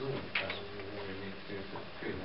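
Low, indistinct murmured speech in a small meeting room, with one short sharp sound about a third of a second in.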